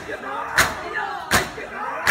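Matam: a crowd of men striking their bare chests with open hands in unison, one loud slap about every three quarters of a second, twice here. Chanting voices carry on between the strikes.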